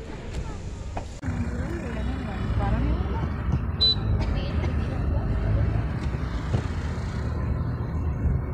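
A voice briefly at the start, then from about a second in a steady low rumble of a car driving, heard from inside the cabin.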